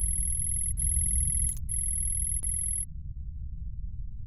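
Electronic text-typing sound effect: a rapid run of high beeps in three stretches, with a couple of short clicks, that stops about three seconds in, over a low rumbling drone.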